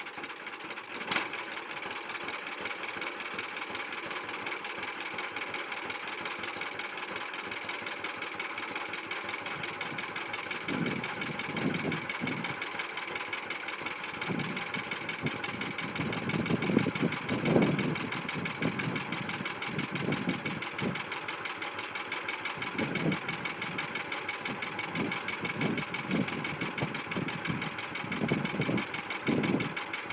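1941 John Deere Model B two-cylinder engine running at idle with an even, rapid firing beat, after a single sharp pop about a second in. Irregular lower swells come and go in the second half.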